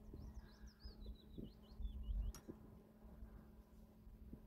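A small songbird singing a quick run of high, wavering chirps for about two seconds, over a low, uneven rumble of wind on the microphone.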